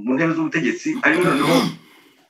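A man talking over a video call, stopping near the end.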